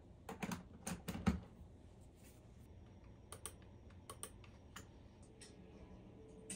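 Power cables and plugs being handled and plugged into a power strip on a desk: a quick run of plastic clicks and knocks, the loudest a little over a second in, then lighter scattered clicks.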